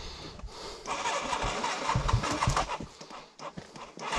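Enduro dirt bike engine being started: it fires about a second in and runs unevenly for a couple of seconds, then drops back.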